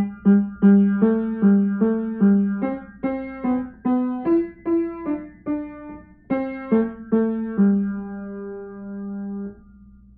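Piano playing the last bars of a simple beginner melody with both hands, in a steady pulse of about two notes a second. The final note is held for about two seconds and released shortly before the end.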